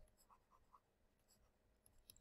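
Near silence, with faint scratching and tapping of a stylus writing on a tablet.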